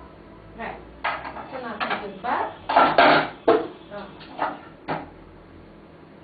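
Ceramic massage cups clinking and knocking against each other as they are handled and set down: about a dozen sharp clatters over four seconds, then quiet.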